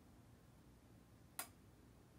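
Near silence with a single sharp click about a second and a half in.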